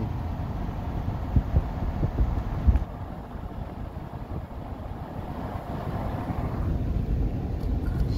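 Road and wind noise in a moving pickup truck: a steady low rumble, with a few sharp gusts of wind on the microphone in the first three seconds.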